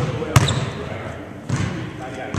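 Basketball dribbled on a hardwood gym floor before a free throw: one sharp bounce about a third of a second in and a softer one later.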